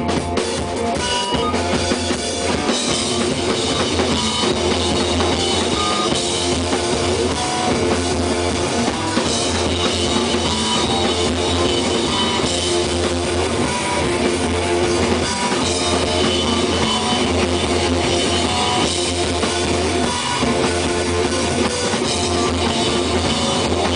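Live rock band playing loud and steady: distorted electric guitars over a driving drum kit with bass drum, heard through a small camera microphone in a club.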